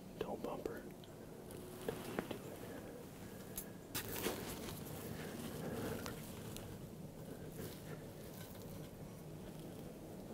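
Faint whispering, with a few small sharp clicks of handling about two, three and a half, and four seconds in.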